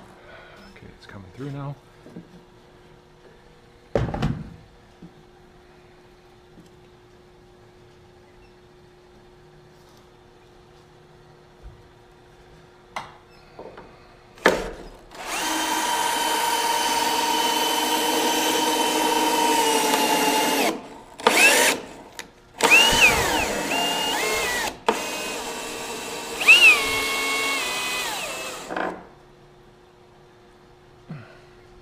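Power drill driving a screw: a single knock about four seconds in, then the drill motor runs steadily for about six seconds, followed by short bursts and runs whose pitch rises and falls as the trigger is eased.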